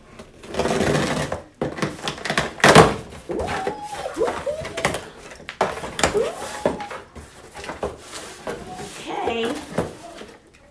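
Packing tape on a cardboard shipping box being slit and torn and the flaps pulled open, with rustling, scraping cardboard and a sharp rip about three seconds in. Short wordless vocal sounds come in between.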